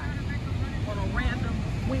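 Outdoor city ambience: a low, uneven rumble with faint voices in the distance.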